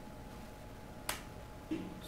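One sharp click at a computer about halfway through, as the command to open the file is entered, over a faint steady background hum.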